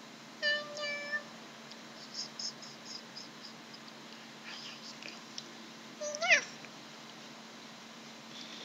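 Maine Coon cat meowing twice: a steady meow about half a second in, and a louder meow near six seconds in that rises and falls in pitch.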